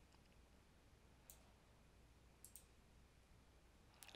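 Near silence with a few faint computer-mouse clicks: one about a second in, a quick double click about halfway through, and a few more near the end.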